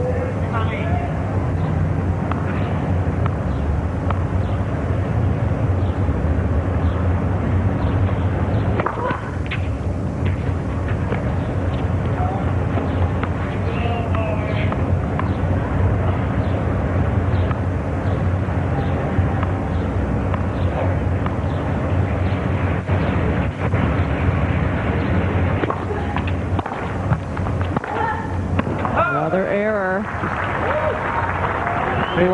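Steady murmur of a tennis stadium crowd, with scattered faint voices, over a low constant hum.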